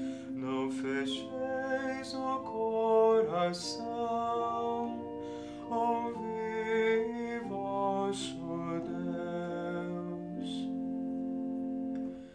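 A man singing a slow liturgical psalm refrain, accompanied by sustained chords on an electronic keyboard.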